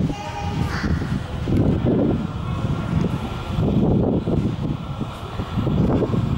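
An approaching 81-71M metro train rumbling unevenly through the tunnel, with gusts of air buffeting the microphone.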